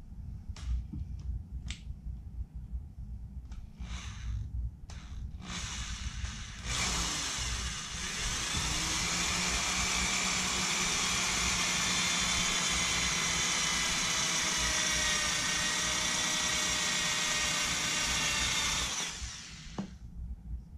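Electric hand drill, first given a few short trigger bursts, then running steadily with a high whine for about twelve seconds and stopping near the end. It is drilling into a small cast-aluminum skull pendant held on a wooden block.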